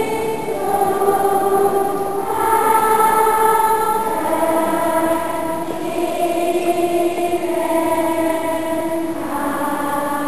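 A choir singing slow, held chords in a large church, the voices moving together to a new chord every second or two.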